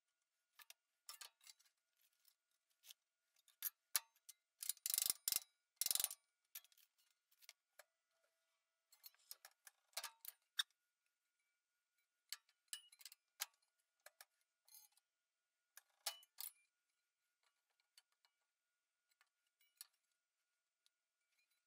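Faint, scattered clicks and light metallic taps from thin stainless steel sheet and a tape measure being handled on a magnetic bending brake, with a short louder run of knocks about four to six seconds in.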